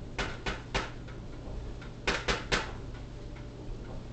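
Knocking at a door: three quick knocks, then three more about two seconds later.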